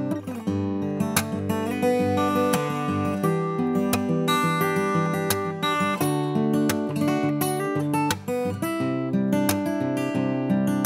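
Furch Bevel 21 grand-auditorium acoustic guitar with a spruce top and Indian rosewood back and sides, played solo: a steady flow of picked notes and chords that ring on.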